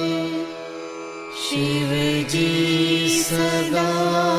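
Devotional mantra chanting sung in long held notes. It dips quieter about a second in, then a new phrase comes in slightly lower with a few pitch steps before settling back on the held note near the end.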